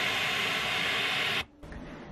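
Baby's white noise sound machine playing steady white noise, then cut off suddenly about a second and a half in as it is switched off.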